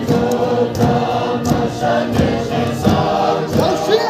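A large group of people singing a hymn together, many voices holding long notes.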